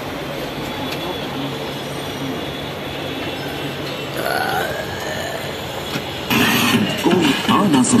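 Steady background noise with a low hum, then louder voices or playback audio coming in about six seconds in.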